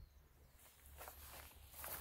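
Near silence, with faint footsteps and rustling in grass and vines.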